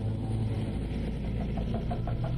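Leopard 2 A7V main battle tank driving, its V12 diesel engine running with a steady low drone.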